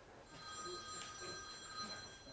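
A mobile phone ringing, faint and steady, made of several held tones.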